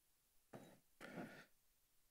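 Near silence, broken by two brief, faint voice sounds about half a second and a second in.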